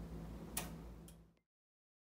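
Faint room tone with a low steady hum. A single sharp click comes just over half a second in, then the sound cuts off suddenly to dead silence.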